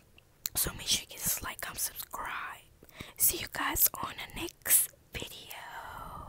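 Close-up whispering straight into an earbud's inline microphone: breathy, hissy speech in short phrases, with a few sharp mouth clicks.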